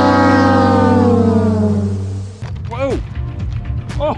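A music sting: a sustained chord sliding slowly down in pitch, which stops abruptly about two and a half seconds in. It is followed by a man's short, startled exclamations as a slippery Spanish mackerel gets loose in his hands.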